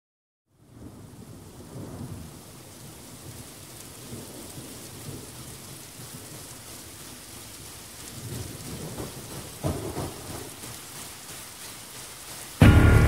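Recorded rain falling steadily with rolling thunder, fading in at the start of a pop song's intro; the thunder swells around two seconds in and again late, with its loudest peak shortly before the music begins.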